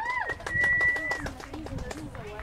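Spectators whooping and cheering in high voices. One whoop falls away at the start, then a high "woo" is held for about half a second.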